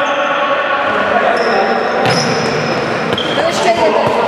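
Futsal play on an indoor court: shoes squeaking on the hall floor in several short high squeals and a couple of sharp knocks of the ball being played, over players shouting, echoing in the hall.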